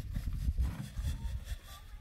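Steel shovel scraping and scooping through a dry sandy mix on hard ground, a few scrapes over an uneven low rumble, easing off near the end.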